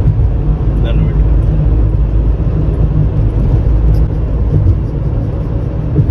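Steady cabin noise of a small car, a Maruti Suzuki Celerio, driving at speed: a loud, even low rumble of tyres on the road and the engine, with a hiss of wind over it.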